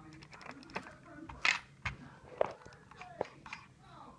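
Scattered light clicks and taps from a new computer mouse being handled over its packaging.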